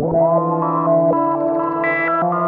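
Studio Electronics Boomstar 4075 analog synthesizer playing sustained notes through a Strymon BigSky reverb pedal: a held low note under upper notes that step to new pitches every few tenths of a second, with a quick pitch swoop at the very start.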